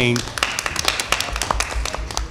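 A brief, scattered round of audience clapping: a few people applauding, the claps irregular and thinning out near the end.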